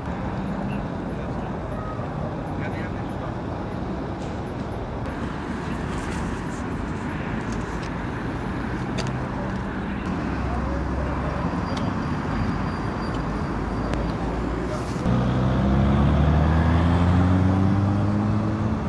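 Steady motorway traffic noise. About three-quarters of the way through, a louder engine comes in and rises gently in pitch as it picks up speed.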